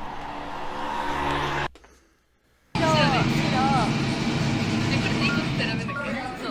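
Soundtrack of a music video's cinematic opening: a car running on a night street with a steady low hum, which cuts off suddenly into about a second of silence. Then young women's voices chatter over a steady low background.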